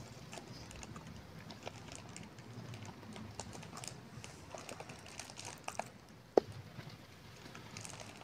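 Quiet room tone with faint scattered clicks and taps and one sharper click about six seconds in. No blender motor is heard.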